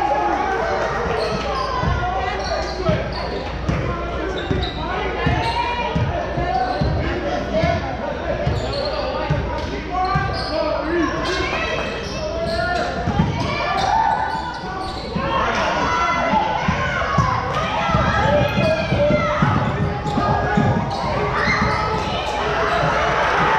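Basketball dribbled on a hardwood gym floor, with repeated bouncing thumps, under voices of players and spectators calling out in an echoing gymnasium.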